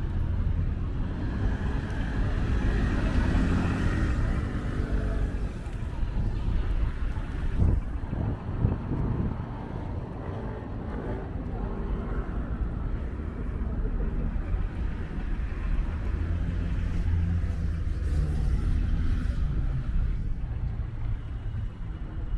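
City street traffic at an intersection: cars passing with a steady low engine and tyre rumble, swelling around three seconds in and again near the end, with a few short knocks about eight seconds in.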